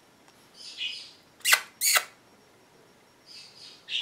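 Pet bird making its kissing 'smooch smooch' noise: two sharp smacks about half a second apart, with soft breathy hisses before and after.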